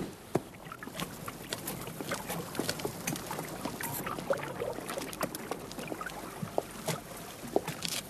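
Footsteps of a man walking slowly on a stone-paved alley: a scatter of light, irregular knocks and scuffs, about two or three a second.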